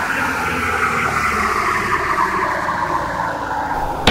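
Electronic dance track intro: a synthesized noise sweep slowly falling in pitch over a low sustained synth drone.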